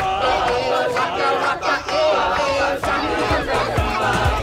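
A crowd of children and young men singing and calling out together, many voices at once.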